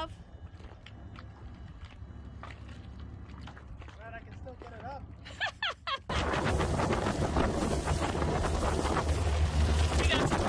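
Loud wind rushing and buffeting over the microphone aboard a small boat underway, with a low drone beneath, starting abruptly about six seconds in. Before that there is only a quiet low hum with a few clicks and brief voices.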